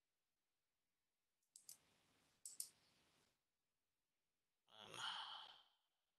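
Mostly near silence, with a few faint clicks in the middle. A person gives a short breathy sigh near the end.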